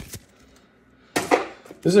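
A sharp double smack about a second in: trading cards slapped down onto a playmat-covered table.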